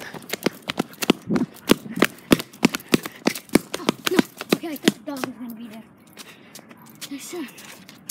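Quick footsteps on a paved sidewalk, about three sharp steps a second, as someone hurries along behind a dog on a leash; the steps stop about five seconds in, and faint voices are heard after.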